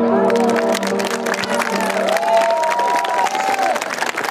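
Audience applauding as a song ends, with the last notes of the musical accompaniment fading under the clapping.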